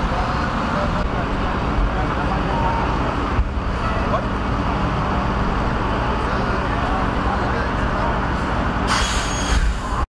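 Fire engine's diesel engine running steadily close by, amid general traffic noise and background voices. A short hiss comes near the end.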